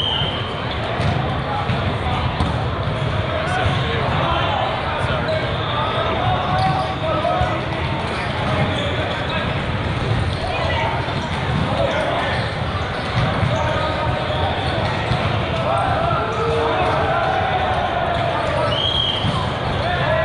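Echoing hubbub of many voices in a large hall, with repeated thuds of volleyballs being struck and bouncing on the courts, and a short high referee's whistle near the end.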